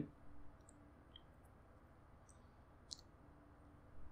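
Near silence with a few faint, brief computer mouse clicks, the clearest about three seconds in.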